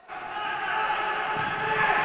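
Indoor sports-hall ambience of a futsal game: a mix of players' and spectators' voices echoing around the gym, growing gradually louder.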